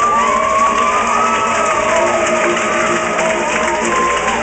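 A string band playing live: fiddles bowing long notes that slide up and down over upright bass and mandolin, with some cheering from the audience.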